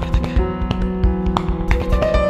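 Piano and percussion improvising together: held piano notes over quick, close-set percussive taps and low thumps.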